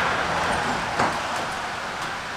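A passing road vehicle, heard as a steady rush of noise that fades away, with a single sharp click about a second in.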